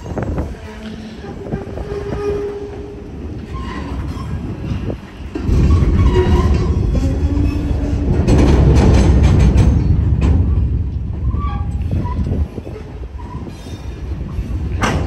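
Open hopper cars of a freight train rolling through a road grade crossing. A heavy rumble with wheels clacking over the crossing and rail joints and short high wheel squeals. It grows loud about five seconds in and eases off near the end.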